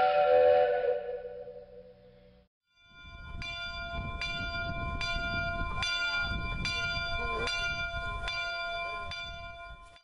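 A sustained whistle-like chord dies away over the first two seconds. After a brief gap, a bell rings about twice a second over a low rumble until near the end.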